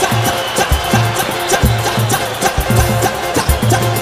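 Pagode (samba) band music with a steady beat of deep drum hits under fast, busy high percussion and pitched instruments.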